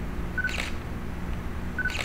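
Digital camera taking two photos about a second and a half apart, each a short focus-confirmation beep followed by the shutter click.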